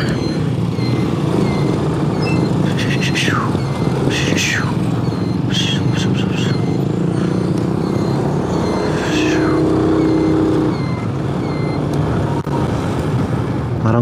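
Motorcycle engine running steadily as it rides along the road, with road and wind noise. A few short high sounds that fall in pitch come through, and a faint high beeping about twice a second.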